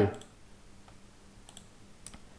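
A few faint computer-mouse clicks with quiet between them.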